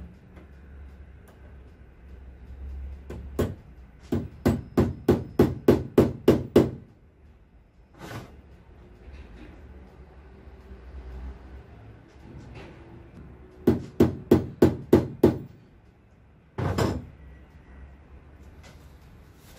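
A hammer tapping screws into soft wood to start their pilot holes. There are two runs of quick taps, about three a second, with a pause between them and a lone knock near the end.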